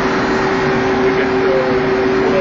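Steady, loud running noise of shipboard machinery in a machinery space, a constant hum with one unchanging pitched tone through it.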